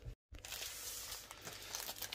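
Plastic bags crinkling as they are handled. The sound cuts out briefly just after the start.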